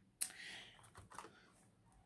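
Light clicks and a short rustle of plastic wax bar clamshell packs being handled: a sharp click just after the start, a brief rustle, then two faint taps about a second in.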